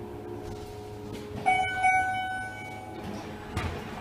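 Schindler MT 300A hydraulic elevator's arrival chime: a ringing electronic tone that sounds twice in quick succession about one and a half seconds in, then dies away over about a second and a half. A short thump follows near the end.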